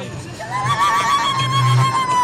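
A woman's high, held ululation: a shrill celebratory cry that rises, holds one high note for over a second and drops away at the end, over triumphant music.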